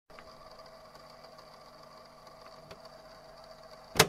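Faint steady hum with light hiss and a couple of soft ticks, just before loud music comes in at the very end.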